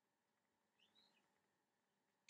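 Near silence: faint room tone, with one short, faint high-pitched chirp about a second in.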